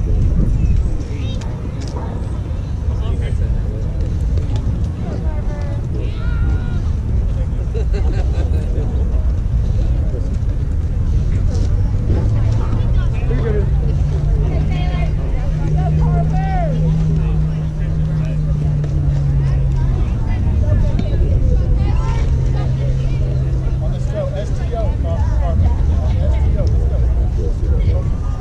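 Open-air ballfield sound: a constant low rumble with distant voices of players calling out. About halfway through, a steady engine hum from a vehicle comes in for roughly ten seconds, rising slightly and then dropping a step before it fades.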